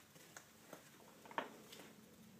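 Quiet room tone with a few faint, sharp clicks, the clearest about one and a half seconds in.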